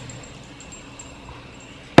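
Freshly poured cola fizzing over ice in a glass: a soft, steady hiss with faint tinkling, and a sharp click at the very end.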